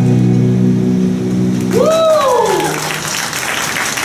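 A rock band's last chord on electric guitars and bass, held steady and ringing, fades out before the middle. A single voice whoops with a rising-then-falling pitch, and applause follows.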